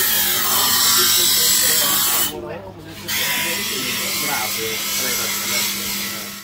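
A workshop machine with an electric motor running with a steady hum and a hard, hissing grind, cutting out briefly a little over two seconds in. Voices are heard in the background.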